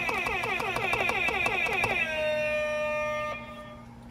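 Novelty hype sound-effect button playing an electronic siren-like effect: rapidly repeating pitch sweeps for about two seconds, then a held steady tone that fades out near the end.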